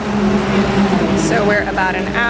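Steady drone of race car engines running on the circuit during a green-flag session, with people's voices coming in about a second in.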